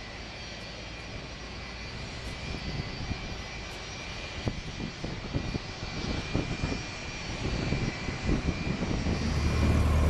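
An aircraft engine running steadily, with a fixed high whine over a broad rush, slowly growing louder, and irregular low bumps on the microphone. Just before the end it gives way to a louder, steady low drone.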